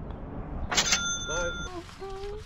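A golf ball dropping into the metal-lined cup with a sharp clatter about three-quarters of a second in, and a brief ring after it, followed by a short shout.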